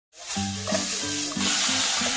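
Food sizzling in hot oil in a wok during a high-heat stir-fry, a dense steady hiss. Background music of short held notes plays underneath.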